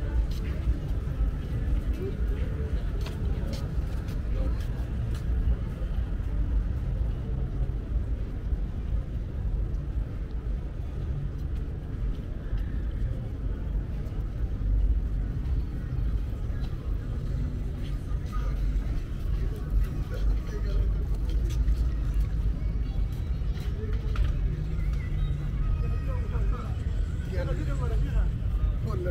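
Outdoor ambience on a busy pedestrian promenade: indistinct chatter of passers-by over a steady low rumble.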